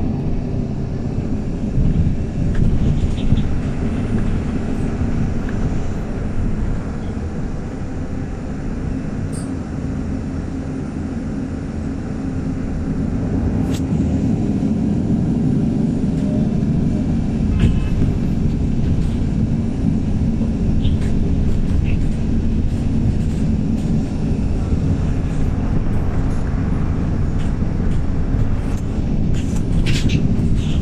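MAN 18.310 compressed-natural-gas city bus with a Voith automatic gearbox, heard from on board while under way: steady engine and road rumble. It eases off a little about eight seconds in and builds again from about twelve seconds, with occasional small rattles.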